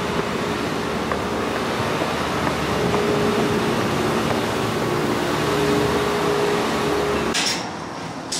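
Steady mechanical hum over a broad rushing noise, with a few faint steady tones; it cuts off abruptly near the end.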